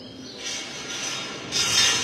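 A rubbing, rustling noise that swells into a loud hiss about a second and a half in.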